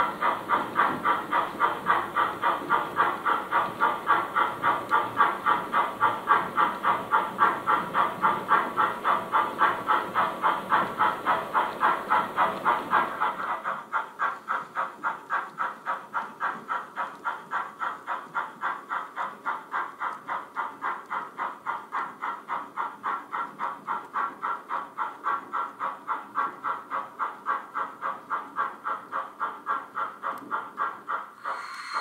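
Steam locomotive chuffing in an even rhythm of about three and a half beats a second, from an H0-scale model steam tank locomotive hauling a goods train. About thirteen seconds in, the chuffing drops abruptly to a quieter level and carries on at the same beat.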